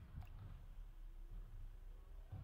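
Garbage truck emptying bins, heard only as a faint, uneven low rumble; the recording has been run through AI noise removal that strips out traffic and background hum.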